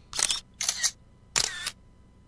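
Camera shutter sound effect: three short sharp clicks in under two seconds, the first and last the loudest.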